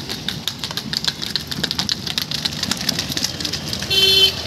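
An ox cart drawn by a pair of bullocks moving along a dirt road: dense, irregular clicking and clattering from the hooves and cart over a steady low engine hum.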